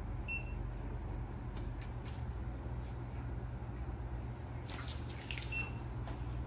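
Two short electronic beeps from a patient monitor, one near the start and one near the end, over a steady low hum and a few faint rustles.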